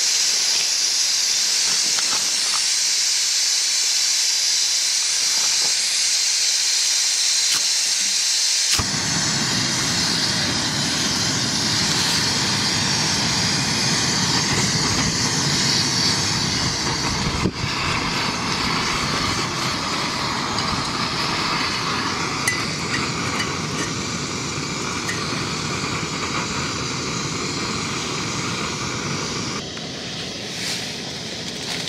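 Backpacking canister stove on a gas canister: gas hissing from the open burner, then about nine seconds in the flame catches and a steady, lower rushing burner noise joins the hiss.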